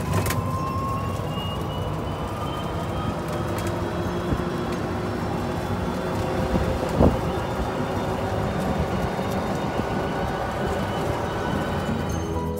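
Golf cart driving along a paved path: a steady run of motor and tyre noise with a thin whine that slowly rises in pitch, and a single knock about seven seconds in.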